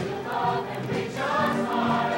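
Mixed-voice show choir singing with musical accompaniment, with short ticks high in the mix.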